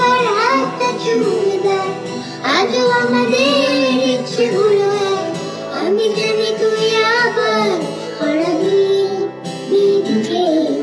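A young girl singing a Bengali song, holding long, wavering notes, over an added guitar accompaniment.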